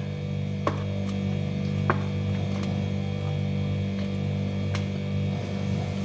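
Steady low electrical hum, with three faint light clicks as chopped vegetables are handled and dropped into a plastic tub.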